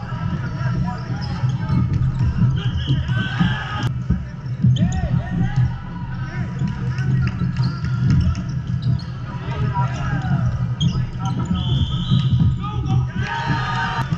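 Indoor volleyball play in a large echoing hall: a volleyball struck and bouncing on the hardwood court, with a sharp hit about four seconds in, over players' distant voices and a steady low hum.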